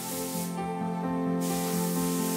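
Background music with slow held notes, over the hiss of a hose-fed gravity-cup paint spray gun spraying. The hiss stops for about a second in the middle, then starts again.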